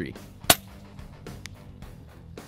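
A single sharp shot from a Daystate Wolverine PCP air rifle about half a second in, with a fainter click about a second later, over quiet background guitar music.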